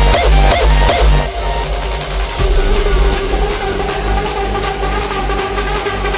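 Downtempo hardcore electronic dance music: a heavy, pounding kick drum stops about a second in and leaves sustained synth chords. A few seconds later fast ticking percussion comes in.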